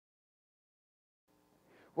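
Near silence: the sound track is dead silent for over a second, then faint room tone fades in just before a man's voice begins at the very end.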